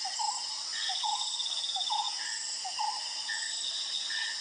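Steady high-pitched drone of insects, with a bird's short notes repeating irregularly about every half second and a brief high trill about a second in.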